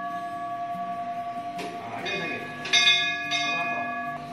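Temple bell set off by a motion sensor without being touched, ringing with a steady clear tone. It is struck again about two-thirds of the way through, and the ring grows louder and brighter.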